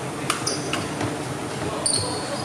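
Badminton rally on an indoor court: a few sharp racket strikes on the shuttlecock, one with a brief high ring, and a short high squeak near the end, typical of court shoes on the wooden floor. A steady hall din runs underneath.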